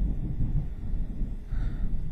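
Thunder rumbling: a deep rumble that starts suddenly and rolls on in uneven surges.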